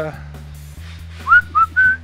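A person whistling a few short notes, each sliding upward, the third held and rising a little higher. Steady low background music runs underneath.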